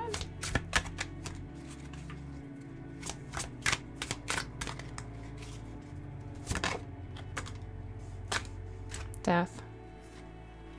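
Tarot deck being shuffled by hand: an irregular run of crisp card clicks and flicks, over quiet background music.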